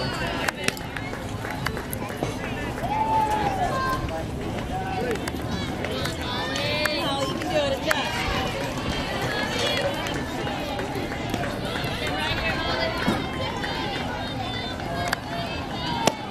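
Indistinct shouting and calling from softball players and spectators, with a few sharp clicks along the way.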